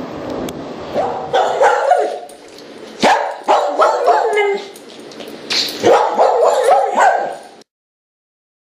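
A dog barking repeatedly in quick runs of barks from about a second in, cutting off suddenly shortly before the end.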